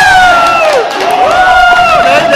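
People shouting and cheering in long, loud held yells over a cheering stadium crowd: the celebration of a penalty goal just scored.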